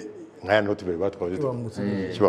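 Only speech: a man talking animatedly.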